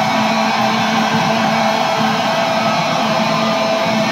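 Live heavy metal band through a loud venue PA, distorted electric guitars holding steady, ringing notes.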